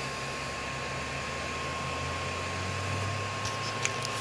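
Steady whir of small electric fans with a low hum and a faint constant high tone underneath.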